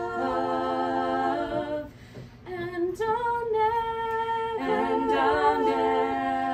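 Three women singing a cappella in harmony, holding long notes; they drop out briefly about two seconds in and come back in on a new phrase.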